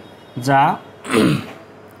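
A man says a short word, then clears his throat about a second in, a rough sound that falls in pitch.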